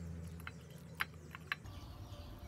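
Wet, sticky clicks of fingers kneading raw snake meat in a chili-salt marinade on a plate, about four short sharp clicks over a low steady hum.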